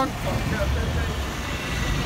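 Low rumble of road traffic on a busy street, with faint voices in the background.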